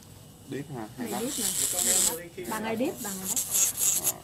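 Speech in Vietnamese, with a high scratchy rubbing hiss twice over it.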